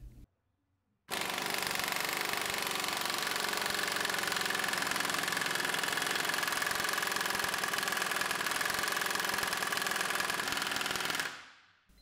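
Pneumatic impact wrench hammering continuously through a weighted Ingersoll Rand power socket on a torque-test dyno, a rapid, even rattle of blows with a steady high whine from the air motor. It starts about a second in, runs for about ten seconds and stops near the end.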